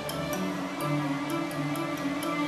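Instrumental background music with held notes changing about every half second and light, high ticking percussion, over a steady rush of cascading fountain water.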